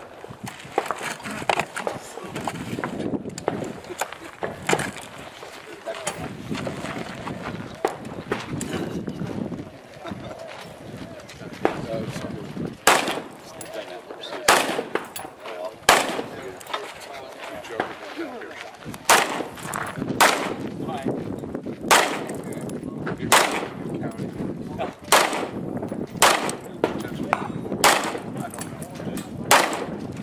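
Single gunshots on a 3-gun match stage, fired one at a time a second or two apart, starting about 13 seconds in; the later shots come from an AR-style rifle.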